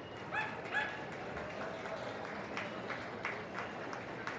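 A Yorkshire terrier gives two short, high yips less than half a second apart. A few scattered hand claps start in the second half.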